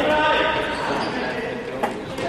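Voices calling out across a echoing sports hall, with one sharp knock of the football near the end.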